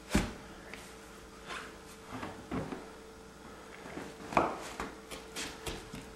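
A few dull knocks and scuffs as a thick stone hearth slab is set down onto a bed of wet mortar and stood on to press it in. The loudest knock comes right at the start and another just past four seconds in.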